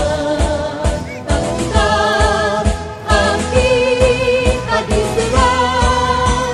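A song with a singer holding wavering, vibrato notes over a steady beat of about two strokes a second.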